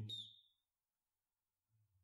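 Near silence: the last of a spoken word trails off in the first half-second, then there is almost nothing to hear.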